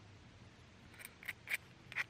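An obsidian biface being worked at the edge by hand over a leather pad. There are four faint, short, sharp scratchy ticks of stone on stone, starting about a second in.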